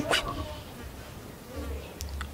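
A spoken word trails off, then faint background noise with a faint, wavering buzz and a low rumble near the end.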